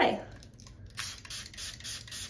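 Plastic trigger spray bottle of water pumped a few times in quick succession, short hissing squirts of mist starting about halfway in.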